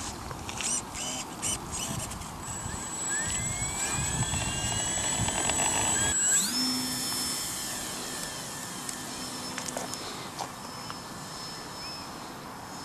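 Electric motor and propeller of a ParkZone F4U Corsair RC model plane: a whine that rises in pitch as it throttles up through the takeoff roll, then holds high and steady as the plane climbs away. A few sharp clicks and wind rumble on the microphone in the first half.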